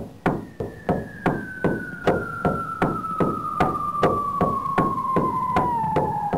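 Synthesized sound-effect track: a steady run of sharp knocks, a little under three a second, under a whistling tone that slowly falls in pitch.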